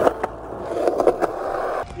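Skateboard wheels rolling over concrete, a steady rumbling hiss with a few sharp clicks. It cuts off just before the end.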